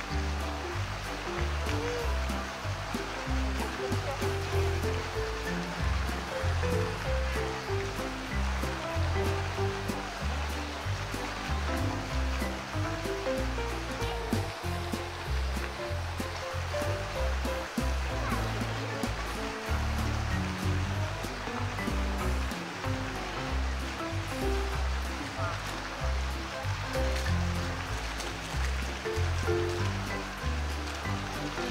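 Background music with changing low notes, over a steady rush of flowing water.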